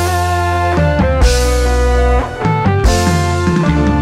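Live band music in the Indramayu tarling-dangdut style: a lead melody of held notes that slide and bend, over a deep steady bass and a few drum hits.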